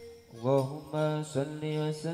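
A lone male voice chanting unaccompanied in the sholawat style, in short phrases of held notes with gliding pitch and brief pauses between them.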